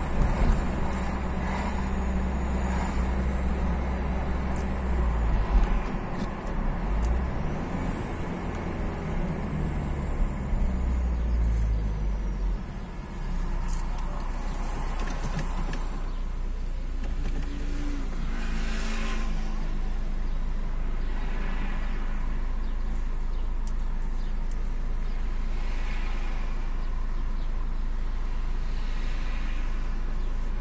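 Car engine and road noise heard from inside the cabin while driving, easing off about 13 seconds in as the car slows to a stop. A steady idling hum follows for the rest of the time.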